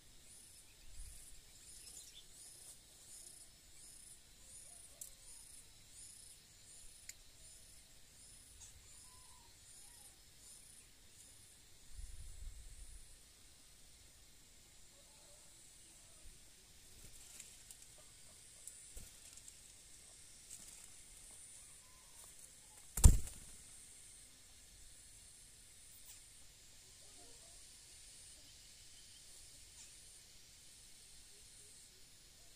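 Quiet rural ambience with an insect chirping in a steady, high-pitched pulse for the first dozen seconds, and one sharp click about two-thirds of the way through.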